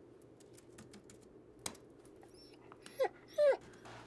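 A dog whining twice, two short calls falling in pitch about three seconds in: it wants to be taken out. Light laptop keyboard typing clicks along underneath.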